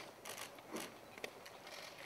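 Faint scattered clicks and light handling noise in a quiet pause.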